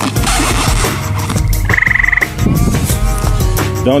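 Broadhead-tipped arrow being pulled one-handed out of a foam block target, with a brief rush of scraping noise in the first second. About halfway through comes a short, rapidly pulsed high trill.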